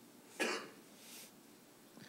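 One short burst of a person's voice about half a second in, then quiet room tone with a brief faint hiss.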